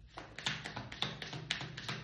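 A deck of tarot cards being shuffled by hand: a quick, irregular run of light card taps and clacks, several a second.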